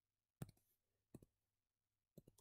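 Two faint, sharp clicks about three-quarters of a second apart, from keying entries into an on-screen calculator emulator; otherwise near silence.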